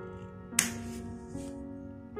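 A single sharp snip of scissors cutting through cotton crochet yarn, about half a second in, over steady background music.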